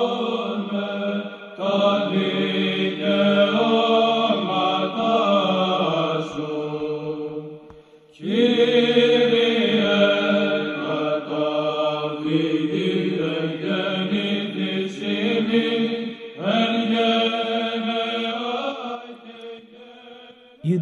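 Slow vocal chant, several voices holding long notes in phrases. It breaks off briefly about eight seconds in, and a new phrase begins near the end.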